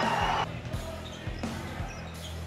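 A basketball being dribbled on a hardwood gym floor, a series of low bounces, heard over background music.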